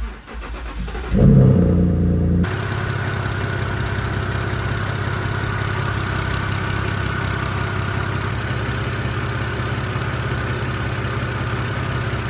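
BMW N52 inline-six engine starting: a brief crank, the engine catches and flares up loudly, then about two seconds in it settles into a steady idle heard close up. The idle carries a little lifter tick and the metallic tick that the N52 always has, here without any oil additive.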